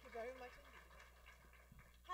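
Very faint, scattered hand claps from an audience dying away, with a brief faint voice in the first half second.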